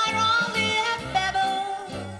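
Live orchestra playing an upbeat gospel-style song: a sustained lead melody line over a bass pulsing about twice a second, with light cymbal hits.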